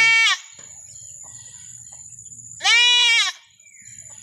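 A young black goat bleating twice: a short high bleat at the very start and a longer one about two and a half seconds later.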